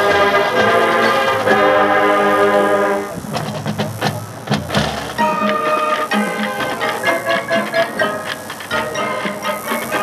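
Marching band playing its field show: full, loud held brass chords for about three seconds, then the band drops suddenly to a quieter passage of short, detached notes.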